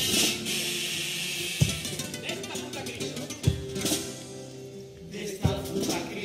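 Music for a Cádiz carnival chirigota pasodoble: a Spanish guitar playing, with a strong low beat struck about every two seconds.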